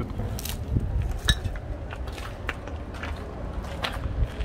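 Footsteps crunching on rubble and debris: a scatter of irregular crunches and clicks over a steady low rumble.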